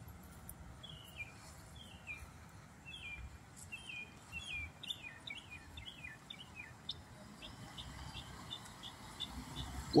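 Songbird chirping: a series of short, falling chirps, then quicker, quieter ticking calls in the last few seconds, over a faint low rumble.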